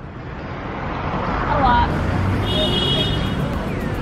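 Steady road traffic noise that swells over the first second or so, with faint distant voices in it.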